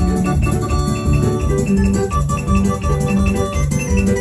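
Music played on an electronic keyboard in an organ voice, with held chords over a steady, pulsing bass beat.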